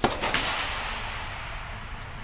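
Tennis serve: the racket strikes the ball with a sharp crack, followed by a second crack about a third of a second later, both ringing out in a long echo that fades over about a second under the air-supported dome.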